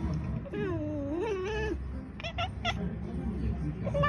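Domestic cats meowing back and forth: one long wavering meow about half a second in, then three short, clipped meows a little after two seconds, and another meow starting near the end.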